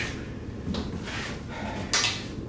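Quiet room with soft footsteps on a wooden floor and a pool cue being handled, giving two faint knocks about a second apart.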